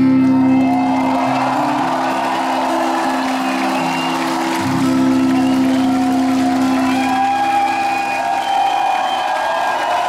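The last held chord of an acoustic rock song rings out on acoustic guitar and violin and fades about halfway through, while a large concert crowd cheers, whoops and applauds.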